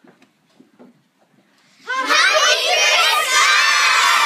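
A class of young children shouting and cheering together, all at once. It starts suddenly about two seconds in after a little quiet shuffling and stays loud to the end.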